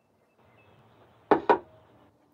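A ceramic mug set down on a hard surface: a brief rustle of handling, then two sharp knocks in quick succession about a second in.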